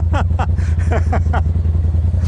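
Polaris RZR turbo side-by-side idling with a steady low hum. A man laughs over it in quick bursts, each falling in pitch, about five a second, stopping around the middle.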